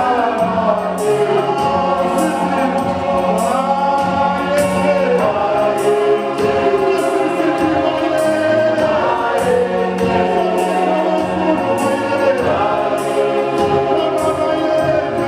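Gospel vocal group of men and women singing together into microphones, their voices sliding between notes, over a low bass line with a regular beat.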